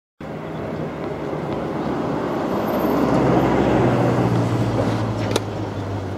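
A road vehicle's engine passing close by: a steady low hum that cuts in suddenly, swells to its loudest about midway and then eases off. Near the end a single sharp knock of a tennis ball struck by a racket.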